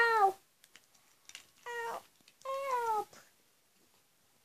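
A cat meowing three times in short calls that fall in pitch; the last is the longest, and it is quiet after it.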